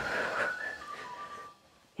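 A person whistling a few short notes that step down in pitch, over a light breathy hiss, dying away about a second and a half in.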